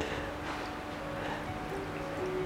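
Tea dribbling in a thin, uneven trickle from the spout of a small clay teapot into a small glass cup, with soft background music of steady held notes.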